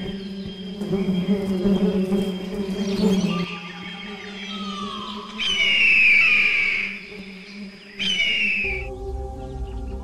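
Background music with a low steady drone, over which a bird of prey gives two loud, falling screams: a longer one just past the middle and a shorter one near the end. Shortly before the end the music changes to a new passage.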